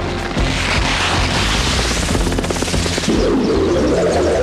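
Cartoon action sound effects: a low rumble with rapid crackling like a burst of gunfire or explosions, mixed with background score music. About three seconds in, a fuller layer of sound comes in.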